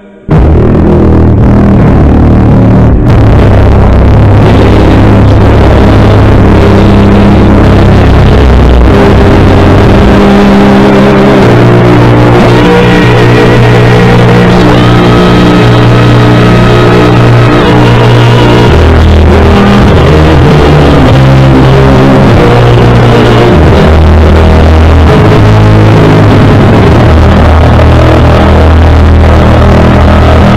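Male vocal quartet singing a slow close-harmony song, abruptly boosted to an extremely loud, clipped level just after the start, with the bass voice's long low notes overwhelming the harmony and sounding heavily distorted.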